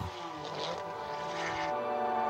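Formula One test car's engine going by, its pitch dropping in the first half second, under a steady ambient music bed of many held tones.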